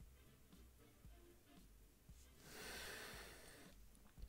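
A person nosing a glass of whisky: one slow, soft breath through the nose lasting about a second, starting about two and a half seconds in, over near-silent room tone.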